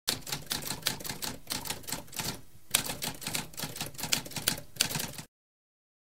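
Typewriter keys typing in a rapid run of clicks, with a brief pause about two and a half seconds in, stopping abruptly about five seconds in.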